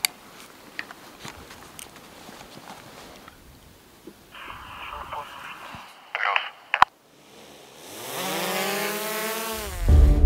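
Scattered soft clicks and rustles of movement. A couple of seconds of thin, band-limited military radio transmission with static end in a sharp click. Then a swelling, droning sound effect builds into music.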